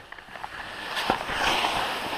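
Skis sliding and scraping over spring snow as the skier sets off down the slope, a hiss that builds and grows louder after about a second, with a couple of short clicks.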